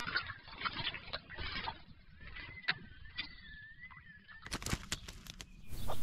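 Australian magpie bathing in a plastic tub of water: light splashing on and off, with a burst of sharper splashes about three-quarters of the way through. A faint wavering whistle runs through the middle.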